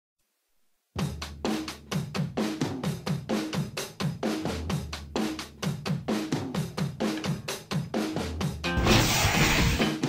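Backing music: a drum-kit beat with snare, bass drum and hi-hat that starts about a second in, with a loud cymbal-like crash lasting about a second near the end.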